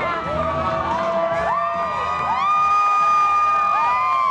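A crowd cheering and whooping over loud live rock music from a band with electric guitar and bass. Several long held whoops overlap, each falling away at its end.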